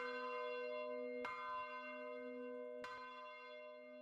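A church bell swinging in its belfry, struck by its clapper three times about a second and a half apart, each stroke ringing on in long sustained tones that slowly fade.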